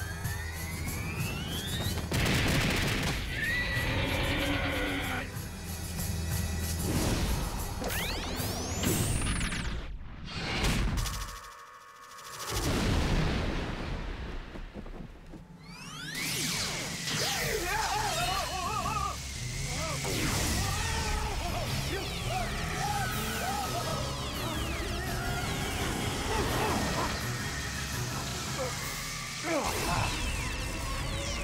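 Animated fight-scene soundtrack: dramatic music mixed with sound effects. There are rising whooshes, crashes, and a monster's growling calls in the middle stretch, with a short drop in level about midway.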